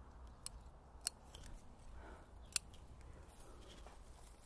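Bonsai scissors snipping shoots and leaves on a maple during leaf thinning: a few short, sharp clicks, the loudest about one second and two and a half seconds in.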